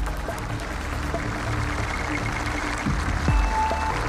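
Background music with a low, steady drone and a few held tones, and a brief higher tone near the end.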